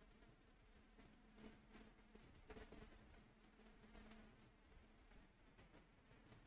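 Near silence: room tone, with a faint low hum in the middle.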